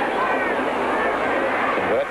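Steady roar of a large stadium crowd, heard through the noise of an old film soundtrack, with faint voices in it.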